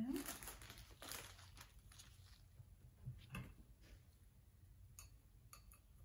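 Plastic soil bag crinkling as it is handled, loudest in the first second or so, then faint scattered scratches and taps as soil is worked into the bonsai pot.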